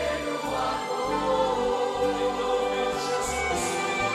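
Mixed church choir singing a hymn in Portuguese, backed by violins and other instruments over a steady bass line.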